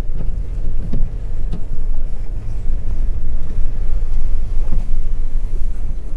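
Steady low rumble of a car driving slowly, heard from inside the cabin, with a few faint clicks in the first couple of seconds.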